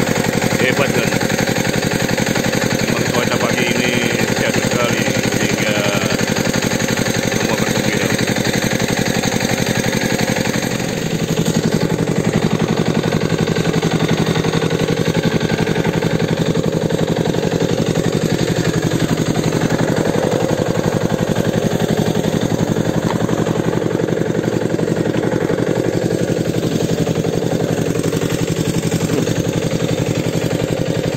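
Outrigger fishing boat's engine running steadily with a rapid chugging beat; about eleven seconds in it dips briefly and its note settles lower.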